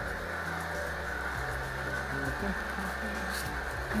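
Omega VRT330 vertical slow juicer running steadily, its auger crushing apple pieces fed down the chute.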